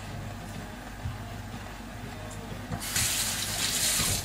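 Kitchen sink tap turned on and running as hands are rinsed under it, starting near the end.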